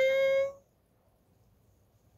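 The tail of a long vocal note held at one steady pitch, cutting off about half a second in, followed by near silence.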